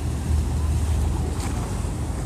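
River water lapping and splashing against a stone quay wall in a passing boat's wake, over a steady low rumble from the river boat and wind on the microphone.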